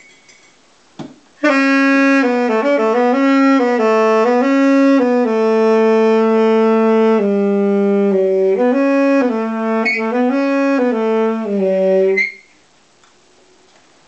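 Alto saxophone played solo by a child, a beginner's improvised tune of short stepwise notes in the low range with one long held note midway. It starts about a second and a half in and stops about two seconds before the end.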